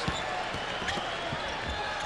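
Basketball being dribbled on a hardwood court, a few low bounces about every half second, under steady arena crowd noise.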